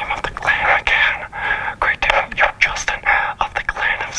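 A man whispering into a handheld megaphone, the whisper coming out amplified in short hissy phrases.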